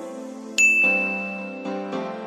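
A single bright bell ding sound effect about half a second in, a clear high tone that rings on and fades over about a second, over steady background music.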